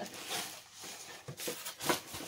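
Packaging rustling and crinkling as an item is worked out of its wrapper by hand, with a few sharp crackles, the loudest near the end.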